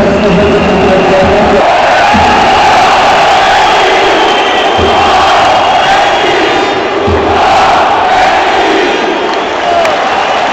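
Ice-hockey arena crowd cheering and chanting loudly, with music playing over it for the first second or two.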